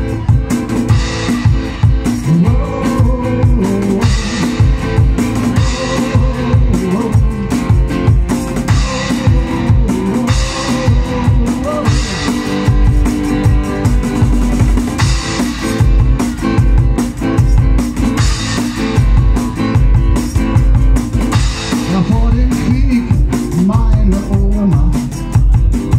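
Live amplified music from a guitar and cajón duo: guitar over a steady beat struck on a cajón, with cymbal hits.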